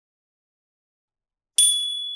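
Dead silence, then near the end a single sharp, bright ding that rings on as a high steady tone: the notification-bell sound effect of a subscribe animation.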